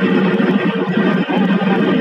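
A fishing trawler's engine and deck machinery running with a loud, steady drone.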